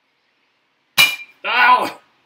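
A metal baseball bat strikes a Sony compact digital camera once about a second in: a sharp, loud clink with a brief ringing. A short yell follows at once.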